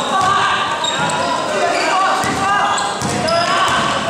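Basketball being dribbled on a gym floor, with voices calling out across the court and short high squeaks, all echoing in a large indoor hall.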